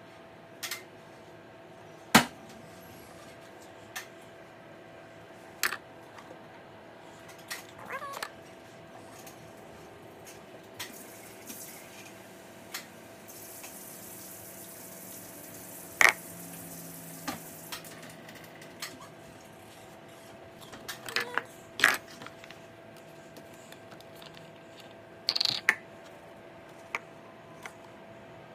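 Irregular knocks and clatter of cups and containers handled around a plastic mixing bowl on a kitchen counter while cake batter is prepared, the sharpest knocks about two seconds in and in the middle. Partway through comes a brief pour from a cup into the bowl. A faint steady hum runs underneath.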